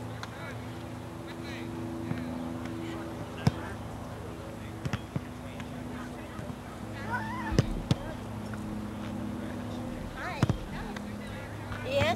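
Faint distant voices of players and onlookers over a steady low hum, with a few sharp clicks scattered through.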